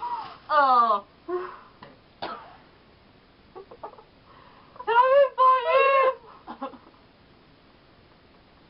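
Two young women laughing hard in high-pitched bursts with falling, wavering pitch. A short burst comes near the start and the loudest, longest bursts come about five to six seconds in, with quiet gaps between.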